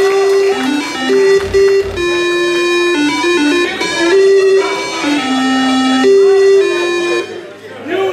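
Chiptune-style electronic melody of single buzzy notes played over a hall sound system, stepping between pitches every fraction of a second and stopping suddenly about seven seconds in.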